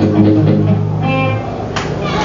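Live punk rock band playing electric guitars and bass guitar, with a low note held for over a second, then a single sharp hit near the end.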